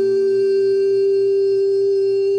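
A man's singing voice holding one long, very steady sung note, unbroken and without vibrato, in a Japanese pop ballad sung to acoustic guitar.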